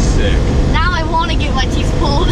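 Steady road and engine noise inside the cabin of a 2018 Porsche 911 Targa 4 GTS on the move, with a high, excited voice breaking over it about a second in and again near the end.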